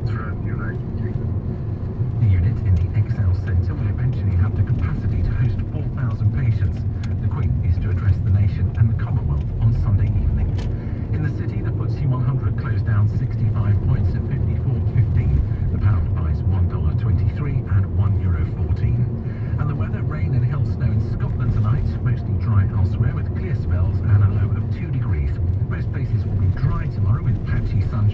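Steady low rumble of a car driving, heard from inside the cabin, with a radio broadcast talking faintly over it.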